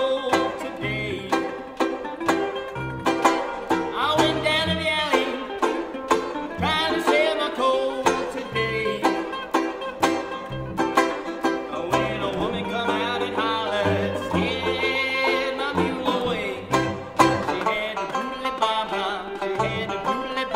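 Old-time string band playing a tune: five-string banjo, mandolin and cello together, with a steady low pulse under the plucked melody.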